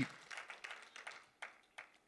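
A few faint, scattered hand claps from a church congregation, thinning out and dying away.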